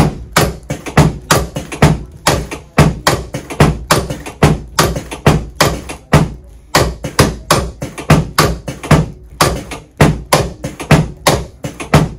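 Chiropractic drop table's thoracic drop section clacking down again and again under hand thrusts to the mid-back, a sharp knock about three times a second throughout.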